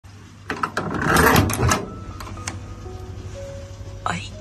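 A microwave oven's door being unlatched and swung open: a few sharp clicks, then a loud clatter, over a steady low hum. Soft background music with a few sustained notes follows.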